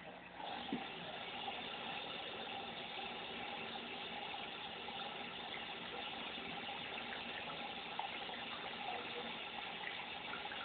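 Steady rush of running water from a tap, an even hiss that starts about half a second in and does not change.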